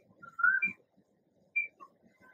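Several brief, faint high-pitched chirps or whistles, scattered irregularly through a pause in speech, one of them bending up and then down in pitch.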